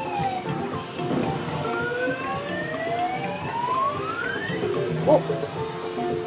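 Claw crane game machine playing a long rising electronic whistle as the claw lifts a prize, with a second, higher rising tone overlapping it, over arcade background music.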